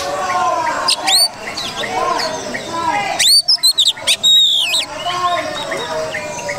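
Oriental magpie-robin (kacer) singing: loud, sharp sweeping whistled notes about a second in, then a quick run of them from about three to nearly five seconds in, over a background of voices.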